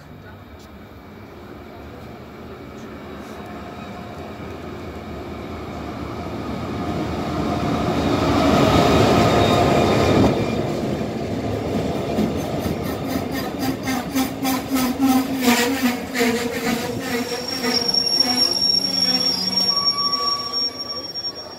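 Diesel-electric locomotive (DEL 7368) hauling a Mugunghwa-ho passenger train into a station. It grows steadily louder as it approaches and is loudest as it passes, about nine seconds in. The coaches then roll by with rhythmic clicking of wheels over the rail joints, and the wheels squeal near the end as the train slows to stop.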